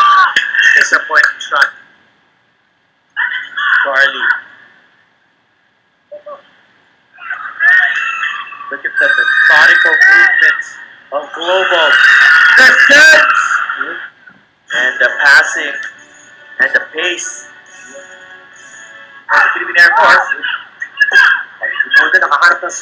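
Football TV broadcast sound: voices with music, cut off twice by about a second of dead silence at edits between clips.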